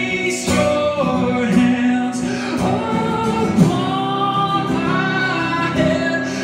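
A man singing long held, sliding notes into a microphone over a strummed acoustic guitar.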